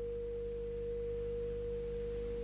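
One steady pure tone, a single held note, running unchanged over faint background hiss.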